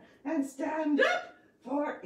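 Speech only: a voice talking in short phrases with brief pauses between them.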